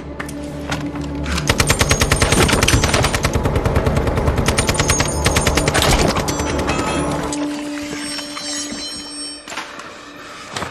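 Rapid automatic gunfire: one long burst starting about a second and a half in and stopping around six seconds, with film score underneath.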